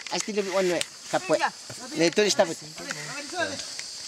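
Men talking in the Korubo language in short phrases with pauses. Under the voices runs the steady high hiss of rainforest insects.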